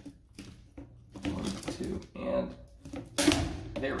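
Tin snips cutting flexible aluminum foil dryer vent duct, with faint clicks and crinkles. About three seconds in comes one loud, sharp snip as the blades get through the duct's harder reinforcement and finish the cut.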